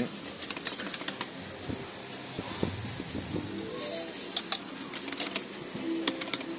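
Clicks from a Barcrest Rocky fruit machine's play buttons being pressed, in small bunches soon after the start, around four seconds in and again after five seconds. Underneath is a steady arcade hum with faint electronic tones from the machines.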